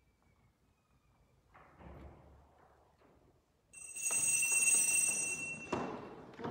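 A bell rings for about two seconds, starting a little past halfway and ending on a sharp stroke: the signal that the Mass is about to begin. Before it there are only faint rustles in the quiet church.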